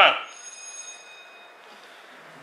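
Electronic tone from a smartphone: several thin, high, steady tones sounding together for about a second and a half.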